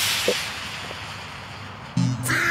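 Rushing hiss of wind on the microphone, which fades away over the first second or so. A couple of faint short blips sound in it.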